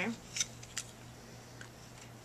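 Quiet room with two short faint clicks about half a second apart, then a fainter one, from makeup products being handled.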